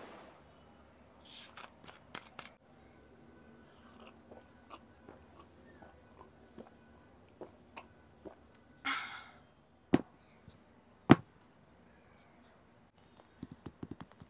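Quiet drinking sounds from a glass: small mouth and swallowing noises, a short sip about nine seconds in, and two sharp clicks soon after.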